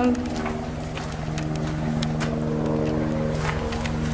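A motor hums steadily at a constant pitch, with scattered light clicks and rustles over it.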